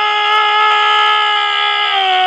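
A man's loud, strained cry held as one long note at a steady pitch, sung out from anger as a raw vocal release rather than a song.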